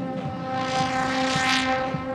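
Marching band holding a sustained chord while a suspended cymbal roll in the front ensemble swells to a peak about one and a half seconds in.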